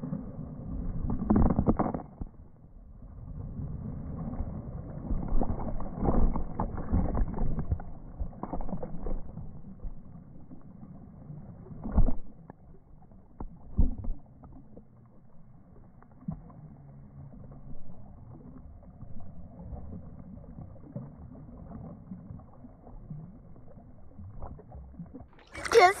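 A person jumping feet-first into a swimming pool with a splash, followed by muffled water sloshing and splashing close to a camera at the water's surface, with two sharp knocks of water about halfway through. A short loud burst of sound comes at the very end.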